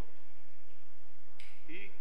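Steady low electrical hum, then a single short, sharp click about one and a half seconds in, just before a man says a word.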